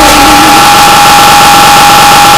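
A steady, harshly distorted high tone over loud noise, held at full loudness, with a lower pitch sliding slightly down in the first half second.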